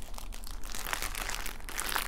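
Plastic wrapping crinkling in irregular small crackles as a plastic-wrapped bundle of diamond-painting drill bags is handled.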